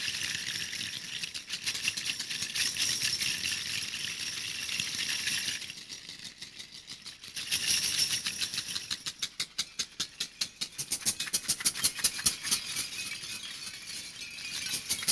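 Hand-held percussion rattles shaken in a performance. A dense, continuous jangling rattle runs for about six seconds, dips for a moment, then resumes. It settles into fast, even shakes of about five a second towards the end.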